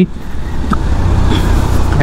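Road noise from riding a motorcycle through city traffic: a steady low rumble and hiss of the bike and the traffic around it, with no clear engine note standing out.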